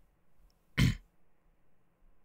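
A man's single short, throaty grunt about a second in, given as an involuntary vocal tic.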